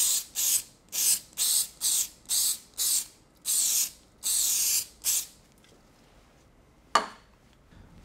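Aerosol can of spray adhesive hissing in about ten short spurts, roughly two a second, the last few held a little longer, as adhesive is sprayed for bonding to steel. The spraying stops a little past five seconds, and a single sharp click follows near seven seconds.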